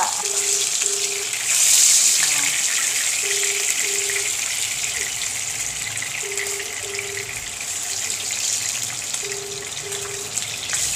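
Tilapia pieces shallow-frying in hot cooking oil in a nonstick pan: a steady sizzle that swells briefly about two seconds in. A faint pair of short beeps repeats about every three seconds.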